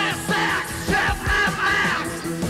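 Live rock band playing with a steady drum beat and electric guitar, and a singer shouting the vocals over the music.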